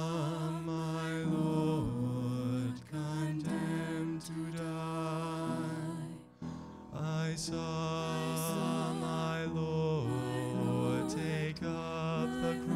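A vocal trio, two women and a man, singing a slow song together in harmony, with long held notes that waver in vibrato and short breath breaks about three and six and a half seconds in.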